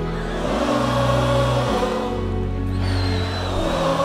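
Live band playing an instrumental stretch without singing: long held bass notes and chords that change a few times.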